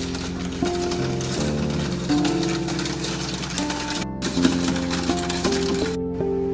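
Background music: held notes that change every second or so over a steady low drone.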